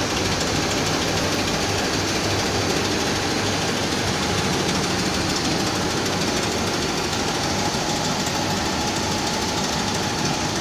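Q326 tumble-belt shot blasting machine running: a steady, dense mechanical noise with a faint even tone in it.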